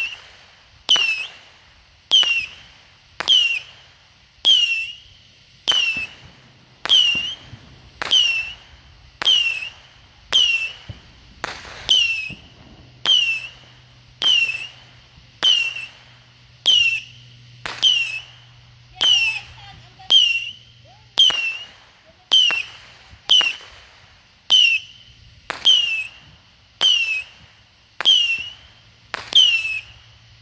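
Firework going off over and over at a steady pace of roughly one shot a second, each sharp pop followed by a short high whistle that falls in pitch.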